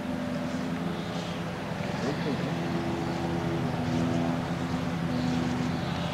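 A steady mechanical hum, a low drone made of several even tones that holds level throughout, with a brief snatch of voice about two seconds in.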